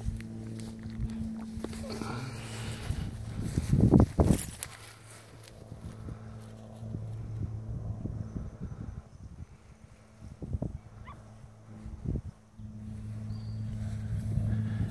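Belgian Malinois dogs moving about a grassy field, with one loud short sound about four seconds in and two smaller ones later, over a steady low hum.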